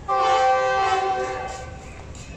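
Diesel locomotive's multi-tone horn, a GE unit numbered 9004, giving one blast of about a second and a half that starts suddenly and fades: the departure signal of a passenger train.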